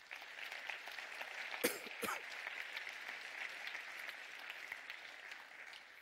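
Audience applauding, starting at once and fading away near the end. Two short, sharp, louder sounds stand out about two seconds in.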